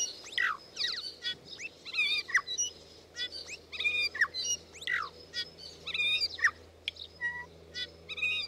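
Birds chirping and calling: a busy run of quick, falling whistled notes, several a second, over a faint steady low hum.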